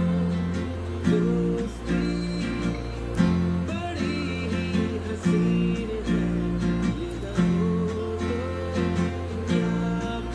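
Acoustic guitar strumming the chords of the song in a steady rhythm, with a strong stroke about once a second and the chord changing about every two seconds.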